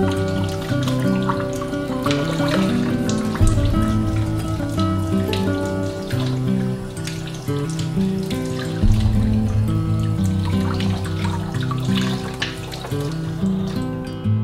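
Gentle strummed acoustic guitar music over water running from a kitchen faucet and splashing on something rinsed under the stream.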